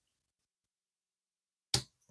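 A single sharp snap near the end: the metal snap button on a leather planner cover being pressed shut.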